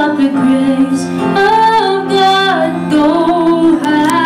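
A woman singing into a handheld microphone over musical accompaniment, holding long notes that glide between pitches.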